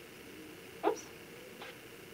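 A woman's brief exclamation, "oops", once. Two faint squeaks of a dry-erase marker on a whiteboard follow shortly after.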